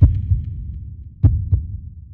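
Logo intro sound effect: deep low thuds over a low rumble. One thud comes at the start, then a quick pair a little over a second later, and the sound dies away near the end.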